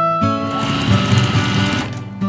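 Home electric sewing machine running a short, fast burst of stitching through cotton fabric. It starts just after the beginning and stops shortly before the end, over background music.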